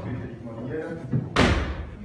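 A single loud thump about a second and a half in, fading over half a second, over voices talking in the background.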